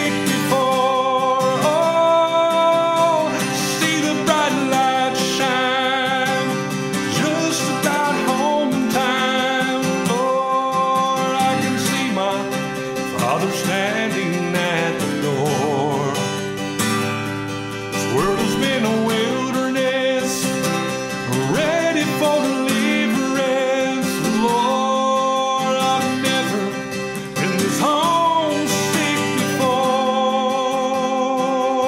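A man singing a gospel song with held, wavering notes while playing an acoustic guitar.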